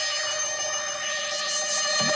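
Radio jingle music: a bright, sustained electronic chord that starts abruptly, with rising whooshes sweeping up near the end.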